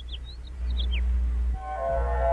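Short, quick bird chirps over a low hum, ending about a second in; then background music enters with sustained, held chords.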